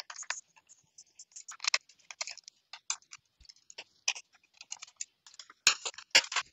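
Irregular small clicks and snaps from the bottom cover of an HP EliteBook G8 laptop being worked loose with a screwdriver and pried up at its edges, with a denser run of snaps near the end.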